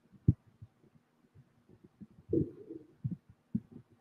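A few faint, low thumps and rustles from a handheld microphone being handled and fitted back onto its stand.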